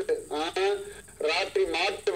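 Only speech: a man talking, heard from a television's speaker.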